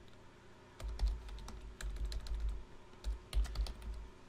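Computer keyboard keys clicking as a short word is typed, a handful of separate keystrokes starting about a second in, each with a dull low thud.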